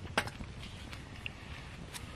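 Hands taking bread out of a checked cloth wrapper: one sharp crack about a fifth of a second in, then light rustling and small clicks.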